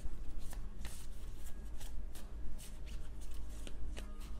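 A deck of tarot cards being shuffled by hand: a run of irregular soft card flicks and rustles.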